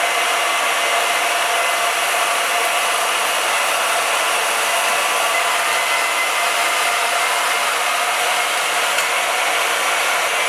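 Vertical band saw running with its blade cutting through steel flat bar: a steady, unbroken whir with a faint high tone.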